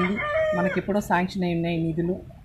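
A woman speaking in Telugu, drawing out some of her vowels, with one long held vowel near the end.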